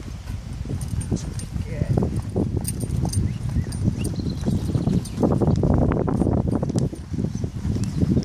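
A horse walking on sand, its hooves falling at a walking pace, with a person's footsteps alongside.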